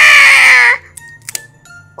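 High-pitched, drawn-out exclamation in a dubbed cartoon character voice, cutting off under a second in. It is followed by quiet with a few faint clicks of paper pieces being handled.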